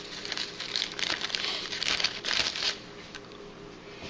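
Plastic freezer bag crinkling as it is handled, a dense crackle that dies down about three seconds in.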